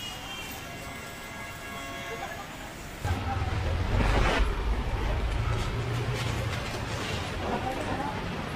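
Large PA sound system, a stack of 18-inch subwoofer cabinets with dual mid-top boxes, starts playing music about three seconds in at its first sound check, with strong, steady bass.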